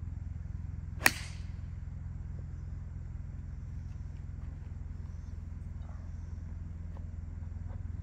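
A four iron strikes a golf ball off the tee about a second in: one short, sharp click. A steady low rumble runs underneath it.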